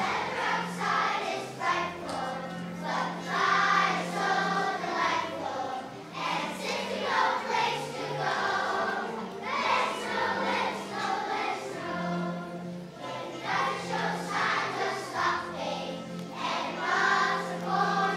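Children's choir singing a song together over a low, sustained instrumental accompaniment.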